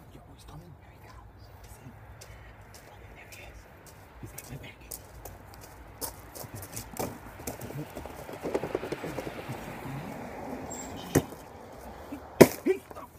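Footsteps crunching on a gravel driveway, irregular and getting busier as the walker comes closer, then a single sharp knock near the end as a cardboard package lands on the ground.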